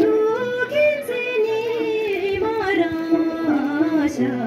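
Female singing of a Boedra, a Bhutanese folk song: long held notes that slide and step between pitches, with a faint low accompaniment underneath.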